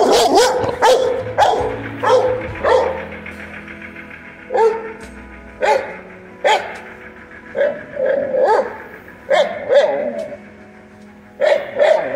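A dog barking, a quick run of barks in the first few seconds, then single barks about once a second.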